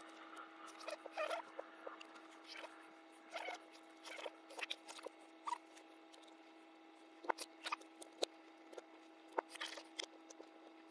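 Small clicks, taps and scrapes of plastic and metal parts being handled as a Yaesu FT-991A transceiver's front panel is fitted back onto its chassis, with a few sharper clicks in the second half. A steady low hum runs underneath.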